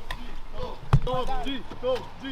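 Voices in a crowd of press reporters, with a single sharp thump about a second in.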